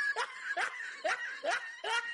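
A cartoon character's snickering laugh: a run of short, evenly spaced snickers, a little over two a second, each sliding up in pitch.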